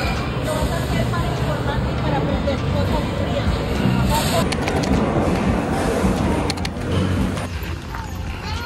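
Busy arcade ambience: crowd chatter mixed with music, with a change in the mix about halfway through.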